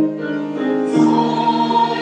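A mixed church choir singing held chords with piano accompaniment, the chord changing about a second in.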